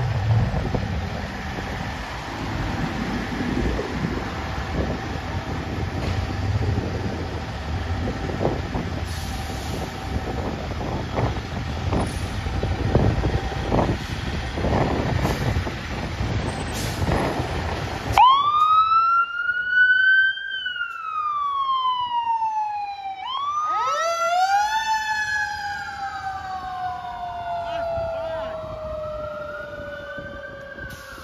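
A fire engine's low engine rumble as it pulls out of the station. About 18 seconds in, its siren starts wailing, each sweep rising quickly and falling slowly, and a second siren overlaps from about 23 seconds in.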